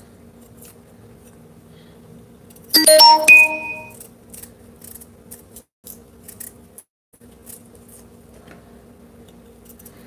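A loud electronic chime of several ringing tones sounds about three seconds in and dies away within about a second. Around it a kitchen knife faintly scrapes as it peels the tough skin off a jicama, over a steady low hum.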